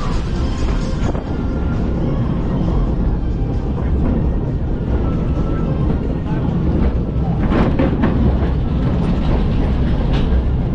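Water-coaster ride vehicle running along its track: a steady low rumble of wheels with rattling, and a burst of louder clatter about seven and a half seconds in. Music plays over it.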